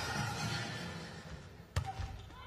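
A volleyball served: one sharp slap of hand on ball near the end, over low arena background noise.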